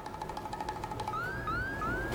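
Comic sound effect: a steady wavering tone, then from about a second in a quick run of short rising whistles, about three a second.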